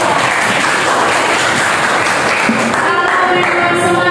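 A class of students clapping together for about three seconds, with voices starting up again near the end.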